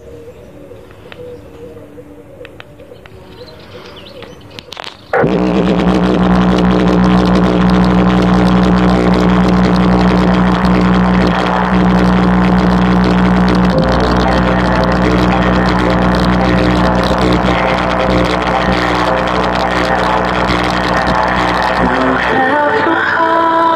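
JBL Flip 4 portable Bluetooth speaker at full volume playing a bass-boosted pop song: a quiet intro, then about five seconds in the music jumps loud with heavy, steady deep bass.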